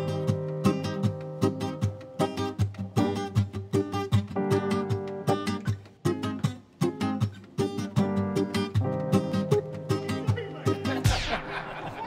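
Band music led by strummed guitar chords in a steady rhythm over bass and sustained notes. About a second before the end, the bass drops out and a high swooshing sweep falls steeply in pitch.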